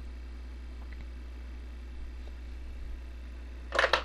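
Steady low electrical hum in the recording, with two faint clicks about one and two seconds in and a short burst of noise near the end.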